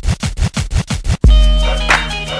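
Hip-hop track intro: rapid rhythmic turntable scratching, about seven strokes a second. A little over a second in, it cuts abruptly into the beat, with a loud, deep, sustained bass and steady synth tones.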